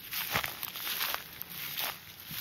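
Footsteps crunching through dry grass, several uneven steps.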